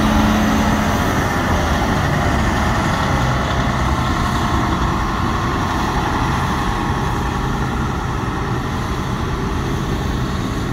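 Engine of a large 6x6 airport crash fire truck running as the truck drives away, a steady heavy rumble that slowly gets quieter.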